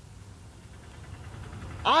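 A short pause in a man's speech, filled by a low, steady background rumble. His voice comes back near the end.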